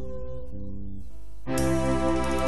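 Instrumental music from a live band: sustained notes, then a fuller, louder passage comes in about one and a half seconds in.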